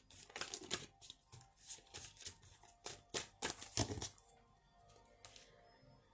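Tarot cards being handled and drawn: a quick run of card clicks and slaps that dies away about four seconds in. Soft background music plays underneath.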